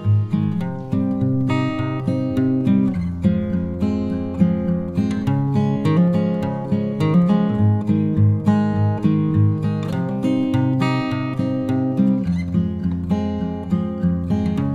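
Background music played on acoustic guitar: a steady run of plucked and strummed notes.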